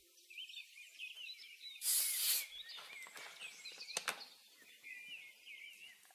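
Faint bird chirps, many short quick calls repeating, with a brief rush of noise about two seconds in and a single click near four seconds.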